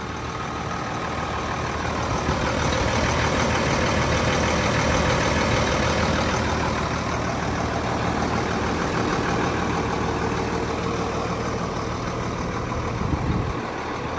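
1994 Case IH 7220 Magnum tractor's six-cylinder turbo diesel running steadily, warmed up after about ten minutes of running, with a smooth, even hum.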